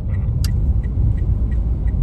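Steady low rumble of a car's engine and tyres on the road, heard inside the cabin while driving, with one sharp click about half a second in and a few faint ticks.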